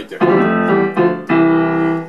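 Casio LK-280 electronic keyboard on its piano voice playing a few held notes and chords, struck about a quarter second in, at about one second and again just after.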